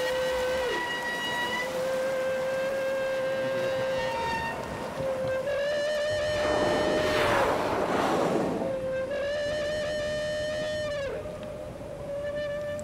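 Humpback whale feeding calls heard through an underwater hydrophone: four long, steady, pure-toned calls in a row, each held for a second or more and some dropping in pitch at the end. A rushing noise swells under the calls in the middle. These are the calls humpbacks sound while they bubble-net feed together on herring.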